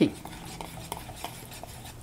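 Wire whisk stirring tapioca starch into a thin egg-and-milk batter in a ceramic bowl: a soft, steady scraping with faint ticks of the wires against the bowl.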